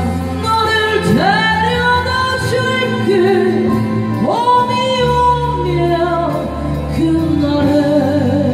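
A woman singing a slow Korean ballad in Korean into a handheld microphone over a backing track, sliding up into long held notes twice, about a second in and again near the middle.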